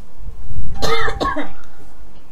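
A man coughing and clearing his throat in one bout of more than a second, starting just after the beginning.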